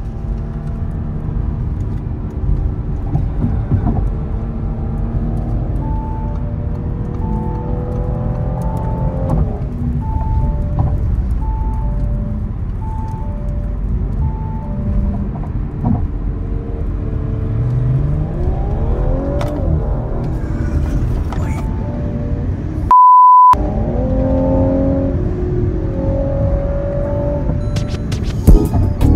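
Car engine and road rumble inside a moving car under background music, with the engine revving up twice. Near the end a short, loud single-tone bleep cuts out all other sound.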